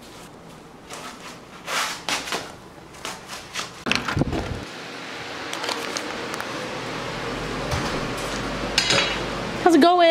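Hand-held movement and scattered knocks, then a door knob turning and a door thudding open about four seconds in. After it a steady background noise rises, and a song starts just at the end.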